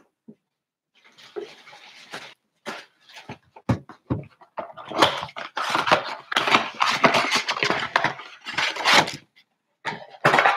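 Cardboard blaster box of trading cards being torn open by hand and its foil packs pulled out: crackling cardboard and crinkling foil wrappers in quick irregular bursts, starting about a second in and busiest in the second half.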